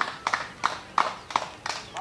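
Steady rhythmic clapping of sharp, even claps, about three a second.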